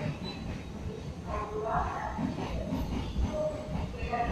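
Running noise heard from inside a DEMU passenger train coach moving along a station platform: a steady low rumble of wheels on track and the train's drive.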